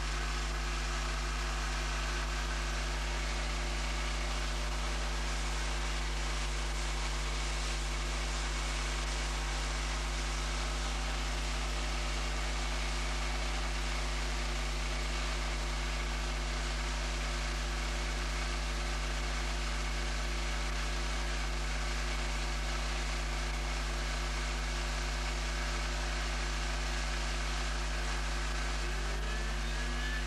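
Ski boat's outboard motor running steadily at towing speed, heard from on board the boat, with an even hiss of wind and rushing wake over it.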